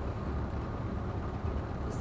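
Steady low rumble of an intercity coach running, engine and road noise heard from inside the passenger cabin.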